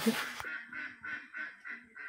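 Faint, repeated animal calls in the background, a short call several times a second.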